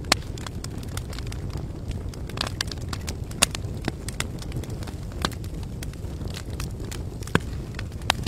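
A crackling fire, likely a sound effect: a steady low rush of burning with irregular sharp crackles and pops, a few of them louder than the rest.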